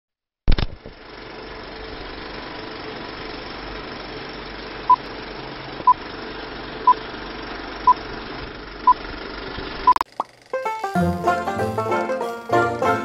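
Old-film countdown leader sound effect: a sharp click, then a steady crackle and hiss of running film with a short beep once a second, six beeps in all. Near the end the noise cuts off and banjo-led music starts.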